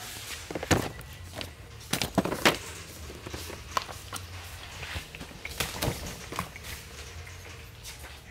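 Boxed firework cakes being handled and loaded into metal shopping carts: irregular knocks and thuds, the loudest about two seconds in, over a low steady hum.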